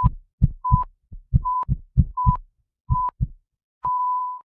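Heart-monitor sound effect: deep heartbeat thumps in lub-dub pairs, about five beats, each with a short high beep. Near the end comes one long steady beep, like a flatline.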